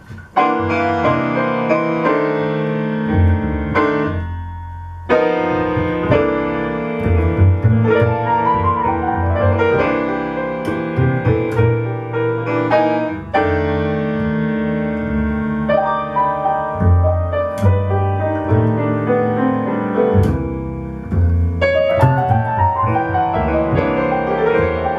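Grand piano and upright double bass playing a jazz-blues instrumental intro: piano chords and runs over plucked bass notes, with a brief break about four seconds in.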